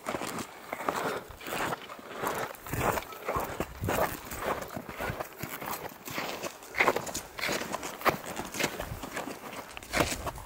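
Footsteps crunching in firm glacier snow, an even walking rhythm of about two steps a second.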